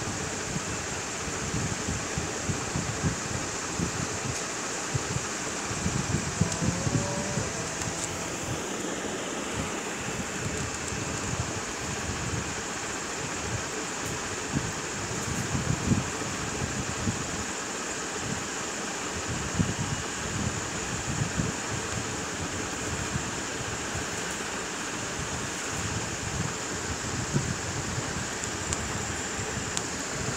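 Steady background hiss, even throughout, with irregular low rumbles beneath it.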